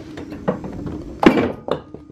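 Several knocks and thumps, the loudest about a second and a quarter in, as a small hotel mini fridge in a wooden cabinet is opened and its contents jostle, nearly falling.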